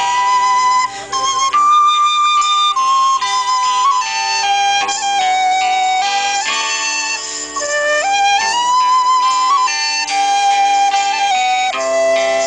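A live band playing an instrumental tune through PA speakers. A high melody line moves between held notes and slides up about two-thirds of the way through, over sustained lower chords.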